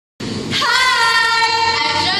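A young woman's voice singing, starting a moment in and holding one long steady note.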